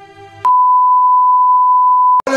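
Television test-pattern tone: one loud, steady, unwavering beep that starts abruptly with a click about half a second in, over the tail of soft string music fading out.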